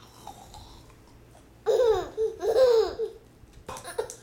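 A baby laughing: two quick, high-pitched bursts of laughter, each falling in pitch, starting a little under two seconds in.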